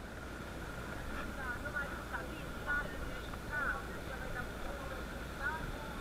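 Steady hiss of rain with faint voices talking in the background.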